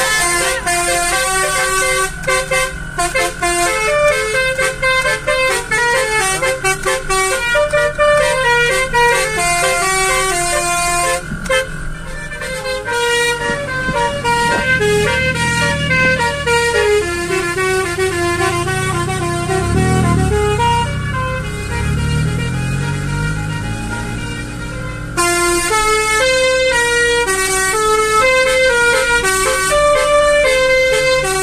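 A vehicle-mounted basuri (telolet) multi-tone air horn played as a tune from a pianika keyboard, notes stepping quickly up and down in pitch. About halfway through the notes thin out and a low rumble rises and falls in pitch, then the tune comes back loud for the last few seconds.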